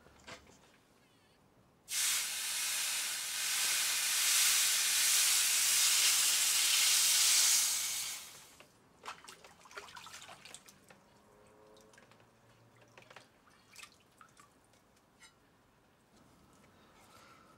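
Red-hot copper plate quenched in a tray of water after annealing: a loud hiss of flash-boiling water and steam starts about two seconds in, lasts some six seconds and dies away. Scattered small drips and clicks follow as the softened plate is moved in the water and lifted out.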